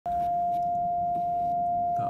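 A car's parking-sensor warning sounding one continuous steady tone, the signal for an obstacle right behind the car; the driver puts it down to frost on the sensors, with nothing actually behind him.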